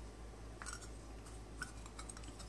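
Faint handling sounds: a couple of light clicks and taps as a plastic marker-light lens is lifted and set back onto its metal housing on paper.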